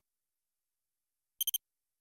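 Silence, then about one and a half seconds in a quick run of three short, high electronic beeps: a digital-display sound effect introducing an on-screen title graphic.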